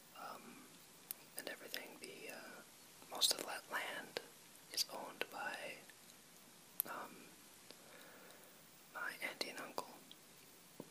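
A person whispering in several short phrases, with a pause about two-thirds of the way through.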